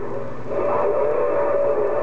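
Steady whistle tone from a Uniden HR2510 radio's speaker, coming in about half a second in and holding, over a faint received voice.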